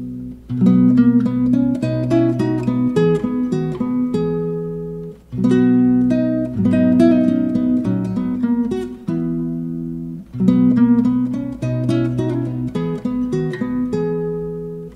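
Solo nylon-string classical guitar, capoed and with its A string tuned down, fingerpicking a slow, simple 17th-century tune. It moves in phrases about five seconds long, each opening with a plucked chord after a brief break.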